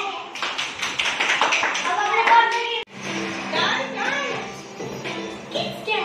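Fast hand clapping mixed with children's voices, cut off abruptly near the middle. It is followed by music with singing.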